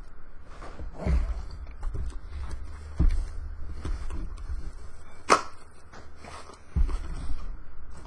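Cardboard box being handled and pried open by hand: a few dull thumps and knocks, with a sharp snap about five seconds in.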